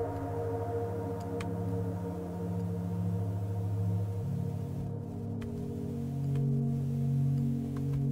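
Bitwig Poly Grid synthesizer patch, driven by a Markov-chain note sequencer, playing sustained low tones rich in overtones. The notes change about four seconds in and again near the end, with a few faint clicks in between.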